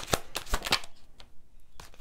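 A deck of tarot cards being shuffled by hand: a quick run of crisp card snaps and flicks that thins out and grows quieter about halfway through.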